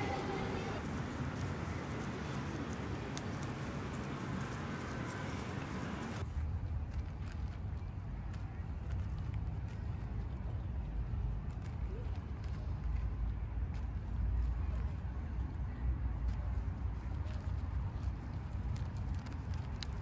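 Outdoor park ambience with faint voices in the background. About six seconds in, the sound changes abruptly to a low, uneven rumble on the microphone, with scattered small clicks and rustles.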